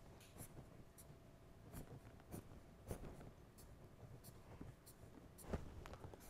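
Faint scratching of a felt-tip marker on lined paper, in a series of short strokes as a zigzag line is drawn.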